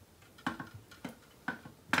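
A few light clicks and ticks of stripped copper wires and a small plastic 5-amp connector block being handled as the wires are pushed into the block's hole.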